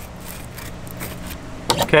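Sharp Dexter fillet knife slicing along the belly of a scaled peacock bass toward the tail, giving quiet scratchy cutting ticks over a steady low hum.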